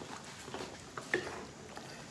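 Wooden spoon stirring a simmering coconut-milk stew in a metal pan, faint, with a couple of light taps of the spoon against the pan.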